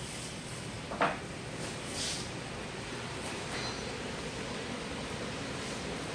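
ECM blower motor in an HVAC air handler running steadily with a whoosh of moving air as it ramps up to first-stage cooling speed. A single short click sounds about a second in.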